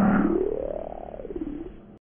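Slowed-down logo sound effect: one deep, pitched, croaking glide that rises to its highest about a second in, falls again and fades, then cuts off near the end.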